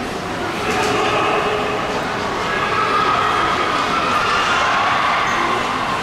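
Steady din of a large, echoing indoor public space, with indistinct voices mixed into it.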